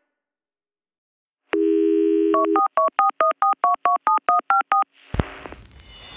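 A telephone dial tone for about a second, then a quick run of about a dozen touch-tone keypad beeps. Near the end, a sharp thud and a rising hiss.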